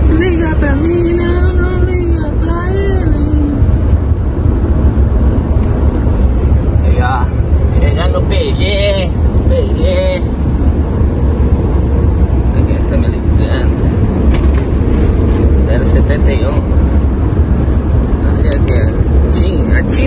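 Steady low rumble of a truck's engine and road noise heard inside the cab while cruising at highway speed.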